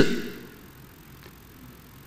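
A pause in speech: a man's voice fades out in the room's reverberation, leaving faint room tone with a low hum.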